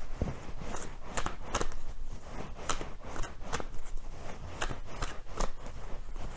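A deck of playing cards being shuffled by hand, a string of light, irregular clicks about twice a second.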